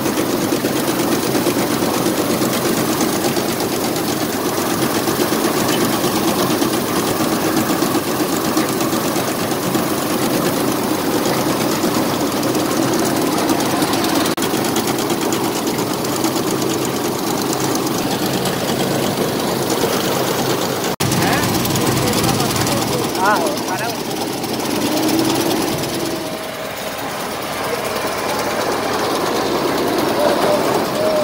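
Combine harvester running steadily while cutting rice paddy, heard from on the machine. The sound breaks off suddenly about two-thirds of the way through and comes back with a different tone.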